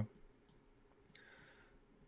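A few faint computer mouse clicks, scattered through the pause, with a brief faint hiss just past the middle.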